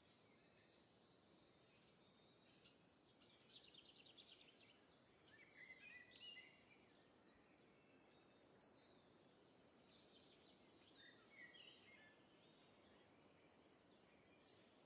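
Near silence with faint birdsong: scattered chirps, a quick trill a few seconds in, and several short descending whistles.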